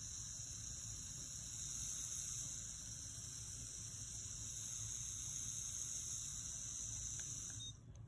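Cordless endomotor spinning a rotary file in continuous reverse rotation (its P6 program, reverse 360°), running fast with a steady high-pitched whine that stops shortly before the end.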